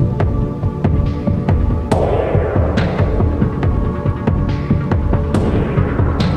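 Electronic music with a deep pulsing bass under sustained synth tones, punctuated by sharp percussion hits; two of the hits, about two seconds in and near the end, trail off in a hissy wash like a cymbal.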